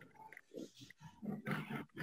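A man's voice murmuring under his breath: a string of short, faint grunt-like sounds while he reads quietly to himself.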